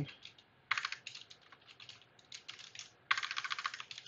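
Computer keyboard typing: one quick run of keystrokes just under a second in, scattered single keys, then a second fast run about three seconds in.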